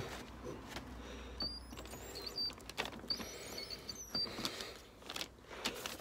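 Makita cordless drill turning a hole saw through the sheet-metal wing of a car, finishing a circular cut, with a faint steady motor hum in the first half and scattered clicks and scrapes of the saw against the metal.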